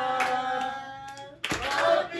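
Voices singing a birthday song to steady hand-clapping: one long held note for about a second and a half, then a short break before the clapping and singing start again near the end.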